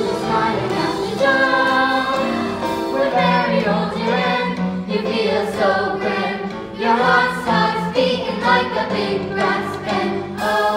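A youth musical-theatre cast singing a chorus number together over musical accompaniment, heard from the audience seats.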